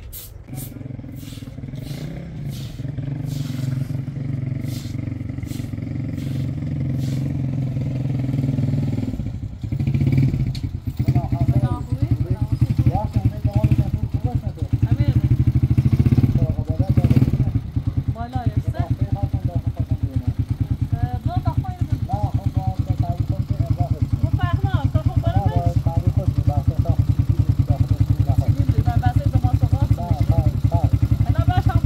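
Small motorcycle engine growing louder as it draws up, then idling with a fast, even putter from about ten seconds in, with voices talking over it.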